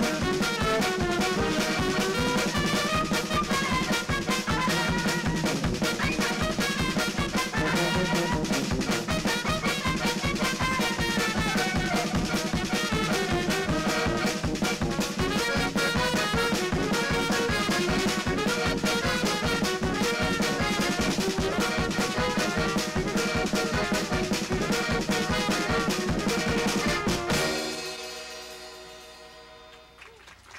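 Klezmer band playing live on trumpet, violin, accordion, tuba and drum kit over a steady beat. About 27 seconds in the tune ends on a held final note that dies away.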